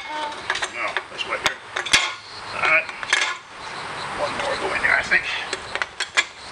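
Beer cans clinking and knocking against a metal rack as they are loaded into it by hand: a run of irregular clicks and clanks, the sharpest two about one and a half and two seconds in.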